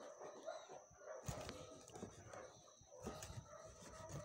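Faint knife strikes on a cutting board as chicken feet are trimmed, two clearer knocks about a second and about three seconds in.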